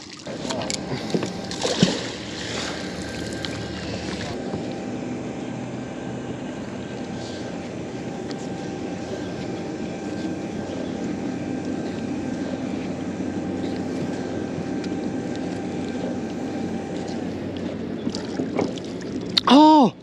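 A splash of a released fish hitting the river, with some irregular water sounds in the first few seconds. Then a steady low hum with faint held tones, which fade out a few seconds before the end.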